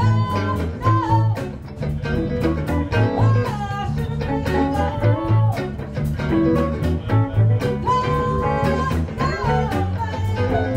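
Live blues band playing: Les Paul electric guitars, bass guitar and drums keeping a steady beat, with a woman singing into the microphone.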